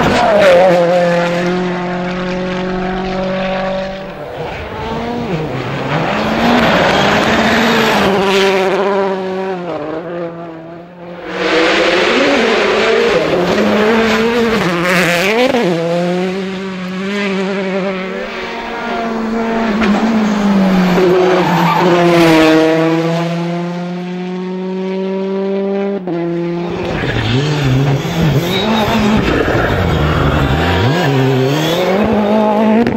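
Rally cars passing at speed, one after another: engines revving hard, with the pitch climbing and dropping through gear changes, and tyres squealing and sliding. The sound swells and fades several times, with a short lull around the middle.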